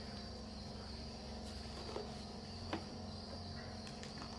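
Quiet room tone with a steady faint high-pitched hum, and a knife cutting through a cake roll on a board giving two soft clicks, about two seconds in and again near three seconds.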